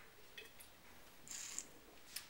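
Faint sounds of a man drinking from a wine glass: a few small clicks about half a second in, then a short hiss of breath about a second and a half in.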